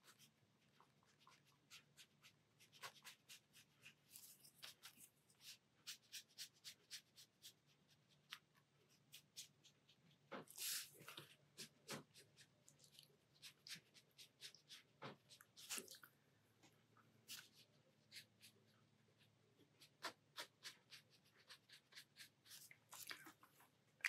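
Faint scratching of a pen tip drawing on sketchbook paper, in short irregular strokes with quiet gaps between them.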